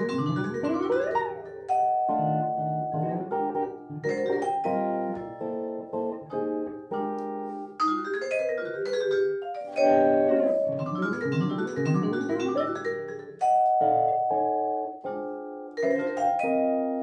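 Vibraphone and electric guitar playing jazz together as a duo, with mallet-struck vibraphone notes ringing over the guitar.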